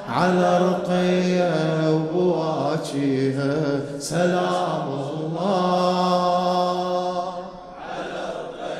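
A male radood chanting a Shia mourning lament (latmiya) into a microphone, holding long notes that step and slide between pitches, with brief breaths between phrases.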